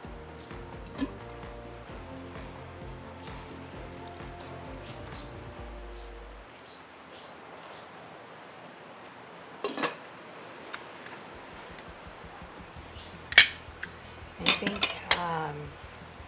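Soft background music for the first few seconds, then a few sharp kitchen clinks of a glass pot lid and a lemon squeezer knocking against a stainless steel stockpot, the loudest about thirteen seconds in and a quick cluster near the end.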